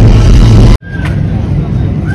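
Loud music with a heavy beat cuts off abruptly under a second in. It gives way to a steady low outdoor rumble with a brief faint tone.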